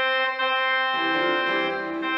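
Organ playing a hymn in sustained chords. Lower bass notes join about halfway through.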